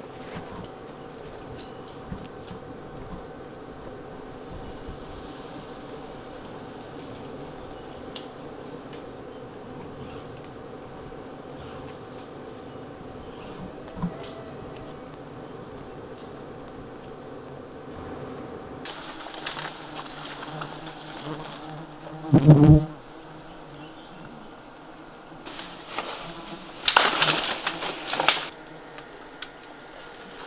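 A colony of giant honeybees humming steadily around their open comb. About two-thirds of the way through, the hum stops and gives way to scattered knocks and rustling, with a loud thump and a burst of crackling near the end.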